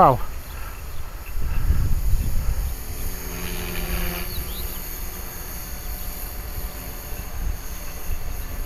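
Wind buffeting the microphone in gusts, over the faint steady hum of an electric RC helicopter's motor and rotors flying high overhead.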